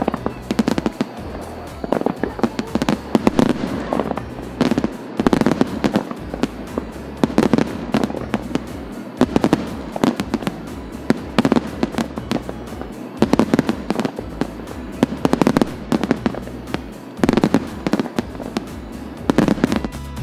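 Fireworks display: volleys of aerial shell bursts and crackling, with clusters of sharp bangs every second or two.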